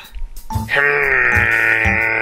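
A cartoon character's long, drawn-out thoughtful "hmm", starting under a second in and falling slightly in pitch, over background music with a low repeating bass.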